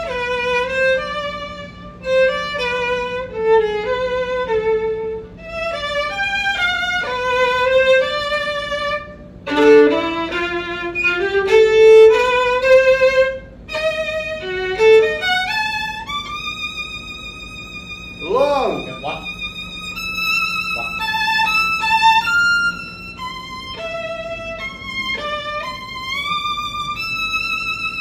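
Solo violin playing a melody in short phrases separated by brief pauses, moving to longer held notes in the second half, with one swooping slide in pitch about two-thirds of the way through.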